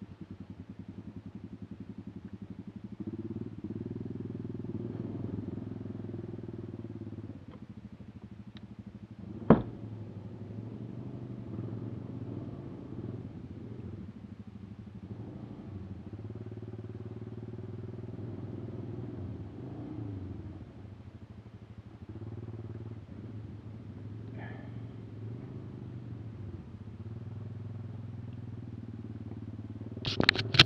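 ATV engine idling steadily while stopped, the level swelling a little now and then. A single sharp click stands out about a third of the way through.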